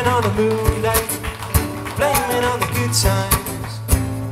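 Live acoustic guitar strummed in a steady rhythm, with a man singing over it.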